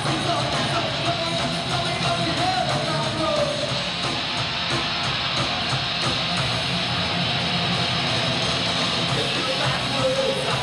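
Live rock band playing, electric guitar to the fore, in a dense, steady wall of sound. A wavering higher line rides over it for the first few seconds.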